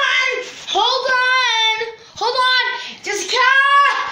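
A high-pitched voice singing wordless, drawn-out notes, four short phrases with brief pauses between them.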